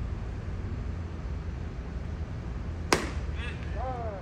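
A pitched baseball hitting the catcher's leather mitt: one sharp pop about three seconds in, followed by a shouted call, over steady ballpark background noise.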